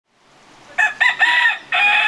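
A rooster crowing: a few short notes about a second in, then one long held final note.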